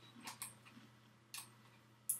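A few faint ticks and clicks of a tripod quick-release plate being screwed into the tripod socket on the bottom of a camera: two about half a second in and one more a little past the middle.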